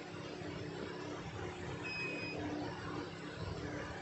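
A multimeter's continuity beeper gives one short high beep about halfway through as its probe is touched to the pins of a phone's display connector, over a steady background hum.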